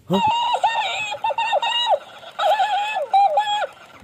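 Talking hamster plush toy repeating the presenter's words back in a high-pitched, sped-up voice, in two short phrases.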